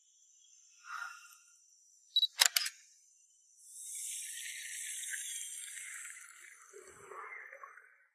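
A camera shutter clicking three times in quick succession about two seconds in, followed by a steady hiss for the last four seconds.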